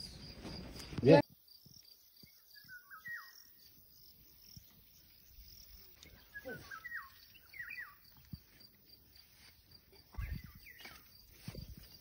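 Faint outdoor garden sound: an insect trilling in a steady, high, pulsing tone, with a few short bird chirps scattered through it and a couple of soft knocks near the end.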